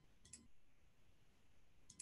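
Near silence with a few faint clicks, a computer mouse being clicked: a close pair about a third of a second in and one more just before the end.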